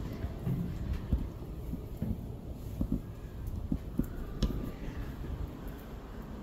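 Footsteps on a concrete floor, an irregular series of low thumps about one to two a second, with low rumble from a hand-held phone being carried.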